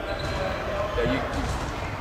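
A man's voice in short, broken fragments between sentences, over a steady low rumble from the gym hall.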